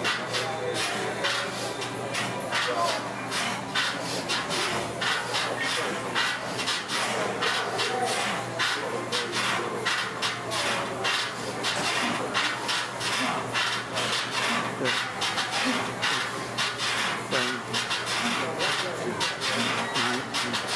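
Gym background noise: indistinct voices, a steady low hum, and a dense run of sharp clicks and rattles.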